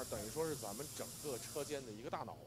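A man speaking quietly over a steady high hiss. The hiss fades out near the end.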